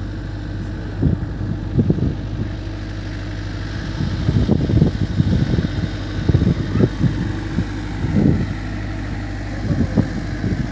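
A steady low mechanical hum like an idling engine, with irregular low rumbles of wind buffeting the microphone that grow heavier from about four seconds in.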